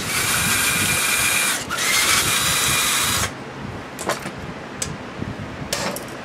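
Power drill running in two bursts of about a second and a half each, with a brief break between them, followed by a few light clicks and knocks.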